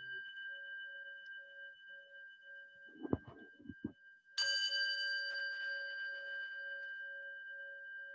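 A small struck metal bell rings on from an earlier strike, its lower tone wavering in a slow pulse about twice a second. A few soft knocks come about three seconds in, then the bell is struck again just past four seconds and rings out, fading slowly.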